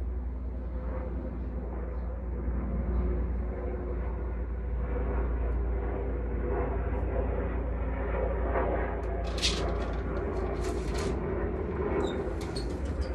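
A steady low rumble of background noise. Near the end comes a burst of rustling and light clicks as a window curtain is handled.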